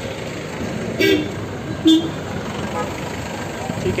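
Busy street traffic: a steady din of engines and road noise, with two short car-horn toots about one and two seconds in.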